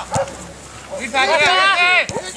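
A dog barking: one bark at the start, then a fast run of high-pitched yaps from about a second in.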